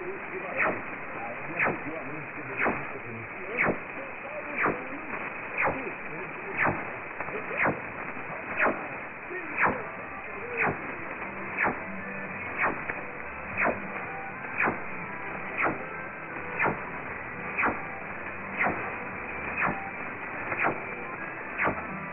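Shortwave receiver audio from the 4785 kHz tropical band in upper-sideband mode, narrow and muffled with nothing above about 3 kHz: steady static hiss, broken by a sharp tick about once a second. Underneath, a weak broadcast signal, Radio Caiari, barely comes through the noise.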